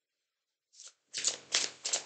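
A deck of tarot cards being shuffled: a run of short, quick strokes starting under a second in.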